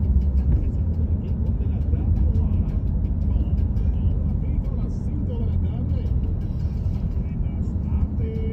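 Steady low rumble of a car driving at low speed, heard from inside the cabin, with faint talk under it.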